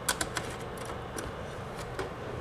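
Small clicks and taps of an SFP transceiver module being slid into a network switch's metal SFP slot, most of them in the first half second with a few more later.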